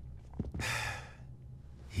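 A person's short, breathy sigh, about half a second long, a little after half a second in, over a faint steady low hum.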